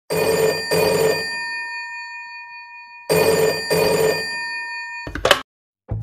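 Old-style bell telephone ringing twice, each time a double ring with the bell tone hanging on after it. Near the end comes a short clatter as the handset is picked up.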